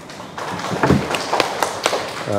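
A small seated audience applauding, uneven hand claps beginning about half a second in.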